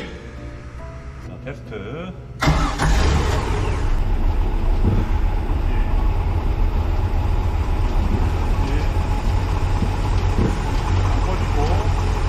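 MerCruiser 5.0 V8 sterndrive engine idling steadily in the boat's engine bay. It comes in abruptly about two and a half seconds in, after a stretch of soft background music.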